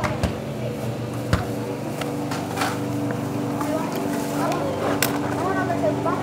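Electric motor and gear whine of an HPI Crawler King RC rock crawler truck climbing slowly over a corrugated plastic sheet onto a car tyre, with a few sharp knocks as its tyres and chassis bump the obstacles.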